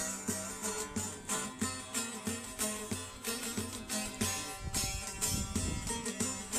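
A bağlama (Turkish long-necked saz) being strummed in a quick, even rhythm, its plucked melody ringing over a steady drone. A low rumble joins in near the end.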